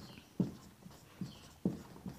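Marker writing on a whiteboard, faint: a few short soft knocks as the tip meets the board, with light scratchy strokes between them.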